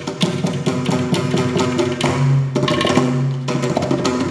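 Mridangam played in rapid, dense strokes during a thani avarthanam percussion solo, its tuned heads ringing, with a low ringing bass tone held for about half a second just past the middle.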